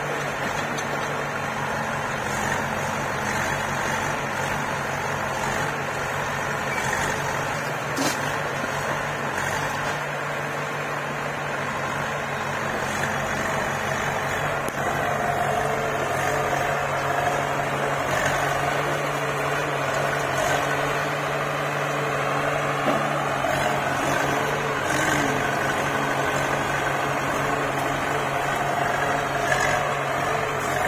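Diesel engines of a backhoe loader and a farm tractor running steadily. A higher whine joins about halfway through.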